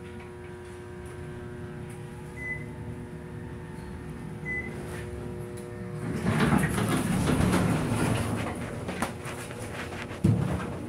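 An Otis elevator car travelling with a steady motor hum, with two short high beeps about two seconds apart. About six seconds in the hum gives way to a louder rumble and rattle, as the car stops and its sliding doors open.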